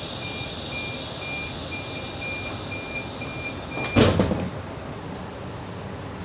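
Double-deck H set train's passenger-door closing warning: a high beep repeating about three times a second, then the sliding doors shut with a loud thud about four seconds in, over steady carriage noise.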